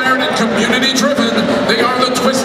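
A man talking amid crowd chatter in a large hall.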